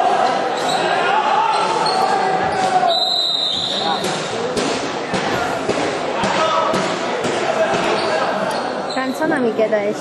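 Voices calling and chattering in a large echoing hall, with scattered knocks and clacks from play on the rink floor. A short high-pitched tone sounds about three seconds in.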